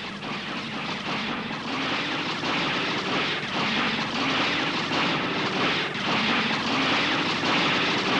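Animated-film sound effect of a volley of arrows flying through the air: a sustained rushing whoosh with many faint overlapping streaks.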